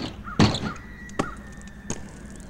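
Kick scooter hitting concrete as it comes down off a skatepark box: one loud clatter about half a second in, followed by two sharper single clacks of the deck and wheels. Recorded through an old Hi8 camcorder's built-in microphone.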